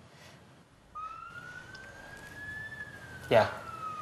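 A single siren-like tone enters about a second in, gliding slowly upward and then slowly back down. Near the end a man says a short word over it.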